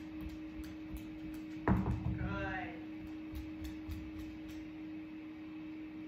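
A single thump about two seconds in, as the dog drops a toy into a plastic mesh basket, followed by a brief pitched sound, over a steady low hum.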